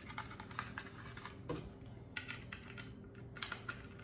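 Faint, irregular light clicking as small screws are backed out of a Kydex holster with a stubby screwdriver, the plastic holster parts ticking as they are handled.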